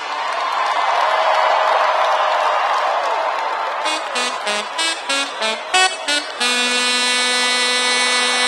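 Electronic dance music breakdown with the bass dropped out. An even wash of noise with crowd cheering comes first. About four seconds in, a run of short, chopped synth notes starts, stepping in pitch, and a held synth chord follows near the end.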